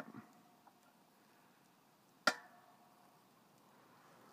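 Mostly quiet, with one sharp metallic click a little past halfway, ringing briefly, from a manual hydraulic log splitter as its pump handle is worked to drive the wedge into a big log under load.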